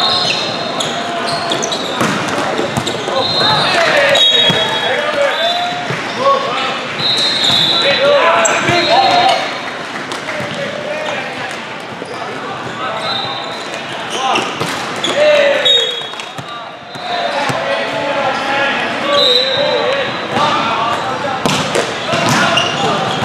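Indoor volleyball game noise: many voices calling and chattering, with scattered sharp thuds of the ball being struck and repeated short, high squeaks of sneakers on the court.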